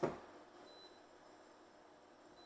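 Faint steady hum and hiss of an induction hob with its cooling fan running, with a single soft knock at the start as a spatula stirs spices in the wok.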